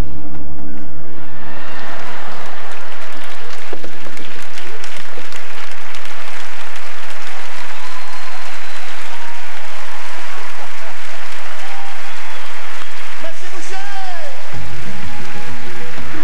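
A large theatre audience applauding and cheering, a dense sustained clapping. Music fades out about a second in and comes back about a second and a half before the end.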